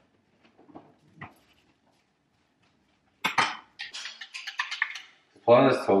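Kitchen cutlery and crockery clattering: a sharp knock a little past three seconds in, then a quick run of light clinks and scrapes. A voice starts near the end.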